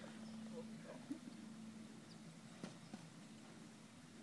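Near quiet over a faint steady hum, with a few faint knocks as a rider dismounts from a standing horse: saddle and tack being handled.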